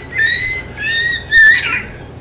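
A young girl squealing in a very high, squeaky voice: three or four short held squeals in quick succession.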